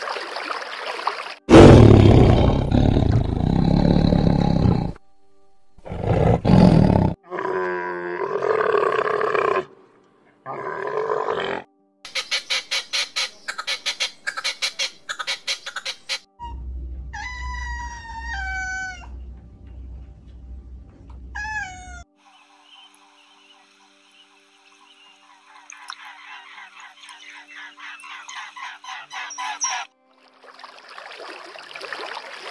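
Short clips of different animal calls one after another: a loud, harsh roar about two seconds in, a run of rapid pulses in the middle, and pitched calls that fall in pitch near the middle.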